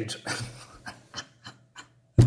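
A man's quiet, breathy suppressed laughter: a few short puffs of breath about a third of a second apart, fading away.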